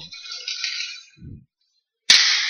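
Ice hockey play heard faintly: about a second of scraping hiss from skates and sticks on the ice, then a short low thump.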